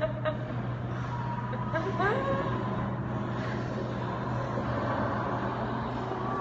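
Steady low hum under a constant bed of background noise, like distant traffic or room noise.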